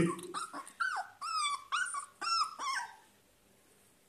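Labrador puppy giving about six short, high-pitched whines in quick succession, most of them falling in pitch. The whines stop about three seconds in.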